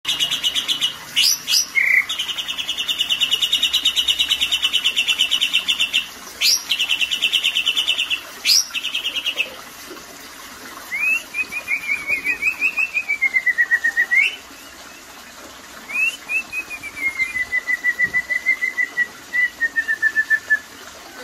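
White-rumped shama (murai batu) in full, energetic song. For about the first nine seconds it gives a long, rapid buzzing rattle broken by a few sharp upswept notes. Then come two runs of quick whistled notes, the first wavering up and down and the last sliding steadily lower.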